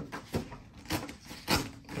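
Paper slips being handled, a few brief soft rustles.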